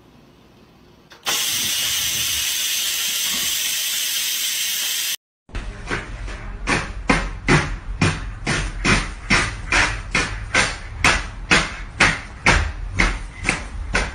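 Steady loud hiss of steam venting from a Cuckoo pressure rice cooker, starting about a second in and cutting off after about four seconds. After a short gap comes a regular run of sharp knocks, about two or three a second, over a low rumble.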